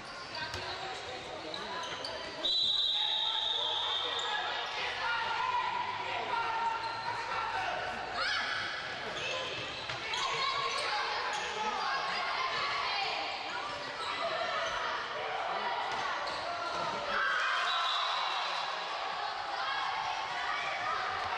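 Handball match play in a large sports hall: a handball bouncing on the wooden court amid indistinct players' shouts, with a sharp referee's whistle blast about two and a half seconds in and another near the end.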